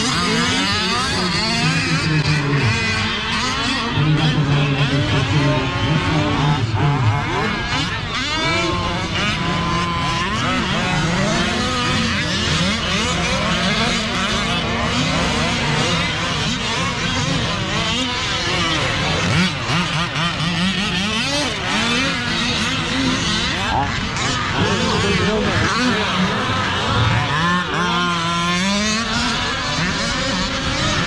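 Several 1/5-scale gas RC cars' small two-stroke engines racing, revving up and down over and over, their pitch rising and falling as they speed up and slow down around the track.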